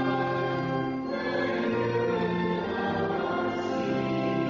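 Church music: a group of voices singing a hymn in long held notes over sustained chords, the pitch moving to a new note about every second.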